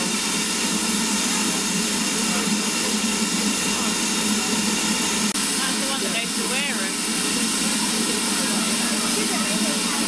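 Steady loud hiss of steam escaping from a standing BR Standard Class 4 steam tank locomotive, over a steady low hum. There is a brief break about five seconds in, and a few short wavering pitched sounds follow soon after.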